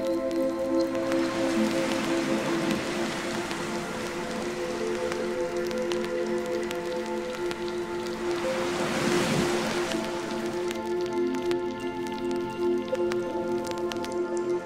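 Melodic techno track: sustained synth chords held over a hiss of noise, with a noise swell that rises and fades about eight to nine seconds in.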